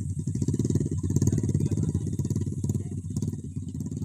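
Motorcycle engine running steadily close by, a fast, even low pulsing.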